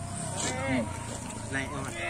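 Brief, faint bits of speech over a steady low background hum.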